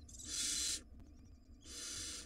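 Barn owl nestlings giving two harsh hissing calls, each under a second long, the first louder: the nestlings squabbling over a prey item.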